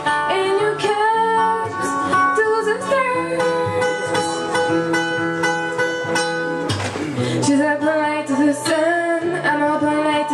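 Young woman singing a pop song into a microphone over an instrumental accompaniment with guitar, holding long, sliding notes.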